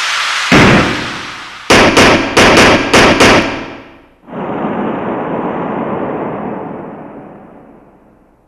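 Sound effects for an animated title logo. A rushing whoosh ends in a loud hit about half a second in. Then a rapid run of about six sharp, ringing strikes, and finally a long rushing hiss that slowly fades out.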